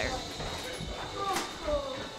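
Faint background chatter of a group of children and adults, with one sharp click a little past halfway.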